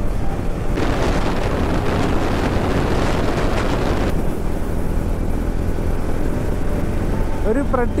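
TVS Ronin's single-cylinder engine running steadily at highway cruising speed, around 90 km/h, under a constant rush of wind on the microphone. A louder burst of rushing noise comes in about a second in and stops suddenly about four seconds in.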